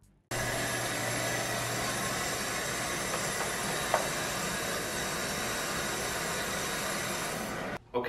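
A steady, even hiss of background noise, with a faint low hum for the first two seconds and one short tick about four seconds in. It starts and cuts off suddenly.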